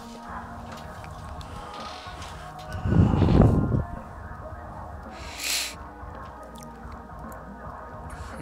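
Background music throughout, with one loud, low strained grunt about three seconds in as a wide leather lifting belt is pulled tight around the waist. A short hiss follows about two seconds later.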